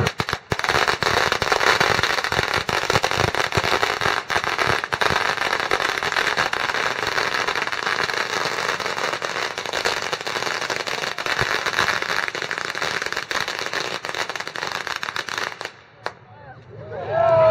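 A long string of firecrackers going off in a dense, rapid run of pops and cracks, starting about half a second in and stopping just before the end.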